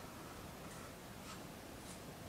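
Faint marker strokes on a whiteboard: three short strokes about half a second apart as a figure is drawn.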